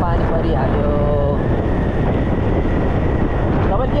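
Wind rushing over the microphone of a camera on a moving motorcycle, a loud steady rumble of noise.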